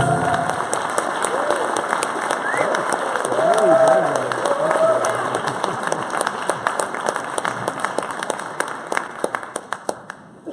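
Audience applauding with some cheering voices after a song ends, the song's last held note stopping in the first half-second. The applause is loudest about four seconds in, then thins to scattered claps near the end.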